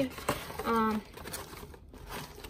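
Plastic rustling and crinkling as a Ziploc freezer bag is pulled out of its cardboard dispenser box, with a brief wordless sound from a woman's voice near the middle.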